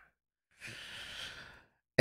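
A man's long, breathy exhale, like a sigh or a silent laugh, lasting about a second and fading away, with no voiced sound in it.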